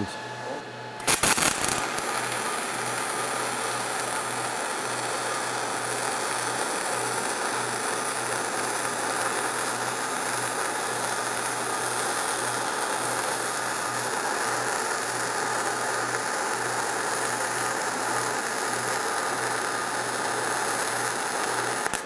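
An ESAB Rebel 235 MIG welder running a spray-transfer arc on .045 wire at about 29 to 30 volts and 285 amps, a steady hiss. The arc strikes with a brief crackle about a second in and burns until it stops near the end.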